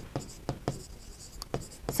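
A pen writing on a board: a string of light, irregular taps and short scrapes as handwritten letters are drawn.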